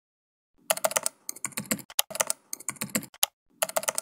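Computer keyboard typing: runs of rapid key clicks in several bursts with short pauses, starting about half a second in.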